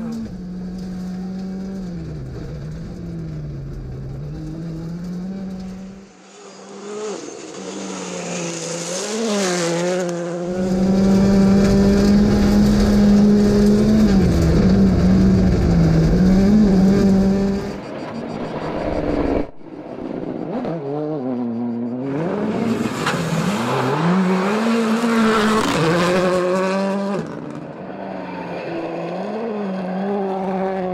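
Hyundai i20 Rally2 car's turbocharged four-cylinder engine at full stage pace on gravel, its revs rising and falling again and again through gear changes. The loudest stretch, in the middle, is heard from inside the cockpit, with a heavy rumble under the engine note.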